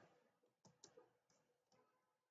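Near silence with three faint computer-mouse clicks, close together about half a second to one second in.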